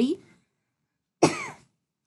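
A single short cough, starting abruptly a little over a second in and dying away within half a second.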